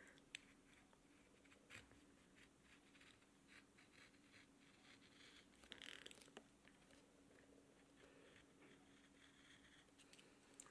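Faint, short scrapes and clicks of a small hand gouge cutting thin grooves into a green-wood spoon handle, over a low steady hum.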